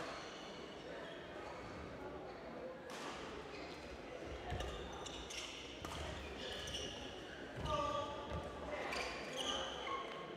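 Badminton rally: rackets striking the shuttlecock in sharp clicks a few seconds apart, with shoes squeaking and feet landing on the court mat, in an echoing sports hall.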